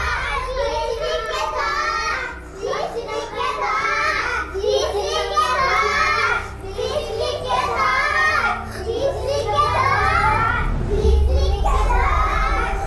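A young girl's voice in phrases a second or two long with short pauses, over a steady low hum that grows louder near the end.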